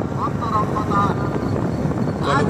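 Steady rumble of riding along a street, with wind on the microphone and brief snatches of voices in the first second.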